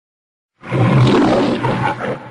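A lion roaring, starting about half a second in and tailing off near the end.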